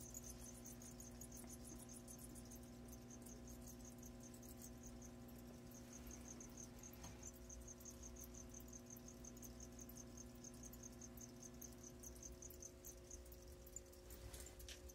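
Near silence, with a faint high-pitched chirping that repeats in quick, evenly spaced pulses, like an insect, over a low steady hum.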